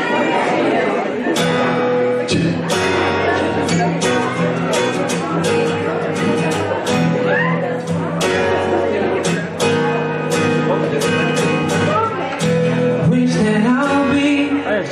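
Acoustic guitar strumming chords at a steady, even rhythm of about two strums a second.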